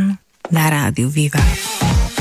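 A brief silent gap, then a radio jingle starts about half a second in: electronic music with a voice over it, played as a bumper between talk-show segments.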